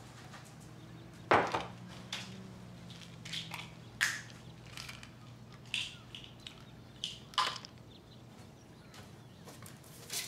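Sparse, irregular knocks and light clatter of objects being handled and set down, over a low steady hum that fades out about halfway through.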